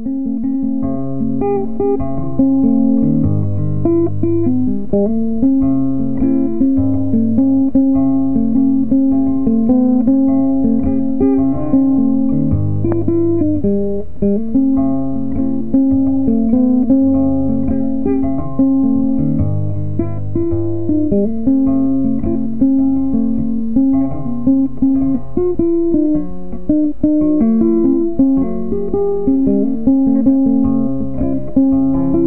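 Instrumental guitar music: plucked guitar over a bass line, played as a short pattern that repeats every few seconds.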